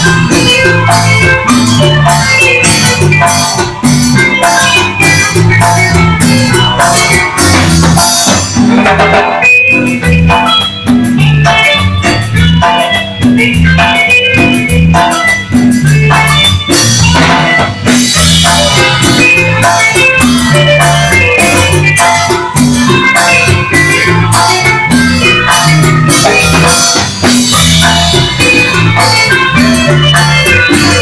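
A live cumbia band playing with electric bass, keyboard and congas over a steady dance beat. The high percussion drops back for several seconds partway through, then comes in again.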